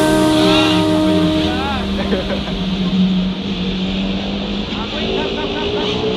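5-inch FPV quadcopter's brushless motors (T-Motor F60 Pro IV) humming steadily after a crash: a propeller has come off and the drone cannot lift off the ground.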